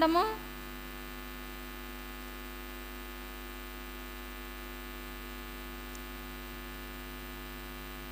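Steady electrical mains hum, a constant buzz with many evenly spaced overtones, picked up through the microphone and sound system. A woman's voice trails off just as it starts.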